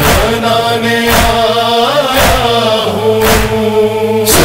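Male voices chanting long held notes in a Shia noha, with a sharp thump about once a second keeping the beat in the manner of matam (chest-beating).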